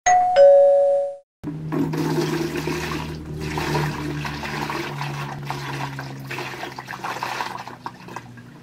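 A two-note ding-dong chime, the second note lower, then a moment later water poured from a container splashing steadily over a face.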